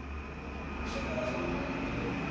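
Steady low background hum with a faint even hiss, no clear event standing out.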